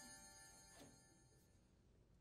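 Near silence, with the faint tail of a ringing chime fading out in the first half second.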